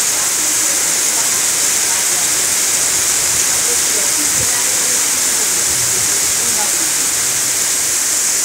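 Heavy rain pouring onto standing floodwater, a loud, steady, even hiss.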